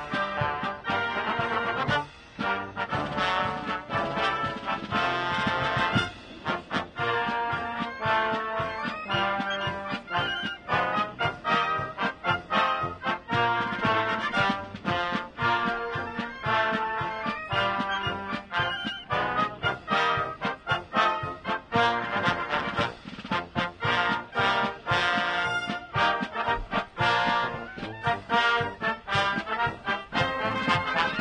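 Military brass band playing in full: trumpets, trombones, saxophones and sousaphones together, with brief breaks about two and six seconds in.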